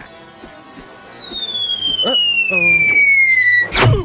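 Cartoon falling whistle: a high tone sliding steadily down for nearly three seconds, ending in one loud thud as a falling body hits the ground.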